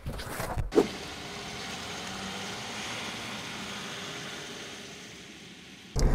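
A couple of knocks near the start, then a Land Rover Discovery 3's 2.7-litre turbo diesel running steadily, swelling to a peak about halfway through and fading away.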